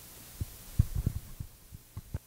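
Handling noise from a handheld microphone being moved: a series of short, dull, low thumps, the loudest a little under a second in.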